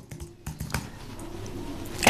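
A few keystrokes on a computer keyboard as a password is typed in, with sharp clicks in the first second.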